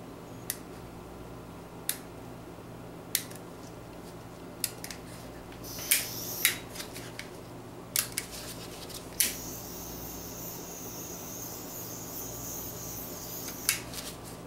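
Handheld torch being lit and burning: a series of sharp clicks with a brief hiss about six seconds in, then a click and a steady high hiss of flame from about nine seconds in, the flame used to draw bubbles out of epoxy resin. A steady low hum runs underneath.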